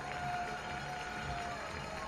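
Faint ballpark background music: one long held note that ends about a second and a half in, over low crowd ambience.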